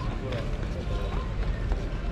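Outdoor promenade ambience: passers-by talking faintly, with footsteps and a steady low rumble underneath.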